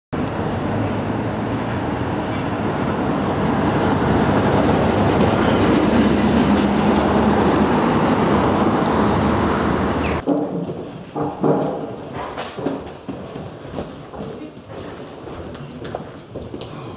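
Loud rumble of a tram passing on the street, swelling to a peak about six seconds in. It cuts off sharply about ten seconds in, giving way to a much quieter indoor stretch with scattered knocks and shuffling.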